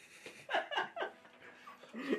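A man laughing: a quick run of short bursts about half a second in, with a few softer ones near the end.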